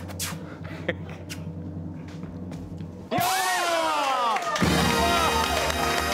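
A low, steady suspense music bed with a drum roll, then, about three seconds in, a sudden burst of loud cheering and shouting from hosts and studio audience as the grape-catch trick succeeds. An upbeat music sting comes in under the cheering about a second and a half later.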